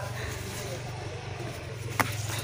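A steady low hum with faint voices, then near the end a single sharp snap as a green eggplant is picked off its stem by hand.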